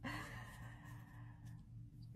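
A woman's soft, breathy sigh that trails off after about a second and a half, over a faint steady low hum.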